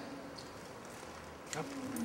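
Quiet room tone in a large hall: a faint steady hiss, with a faint short sound about one and a half seconds in.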